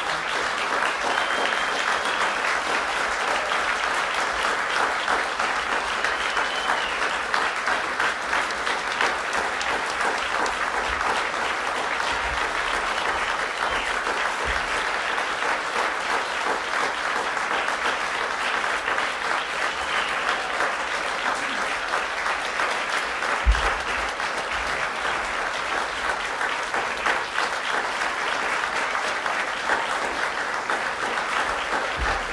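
Audience applauding steadily, with one short low thump about two-thirds of the way through.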